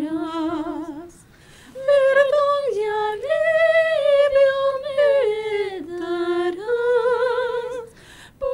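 Two women singing a slow Christian worship song together without accompaniment, with long held notes and vibrato and a short pause for breath about a second in.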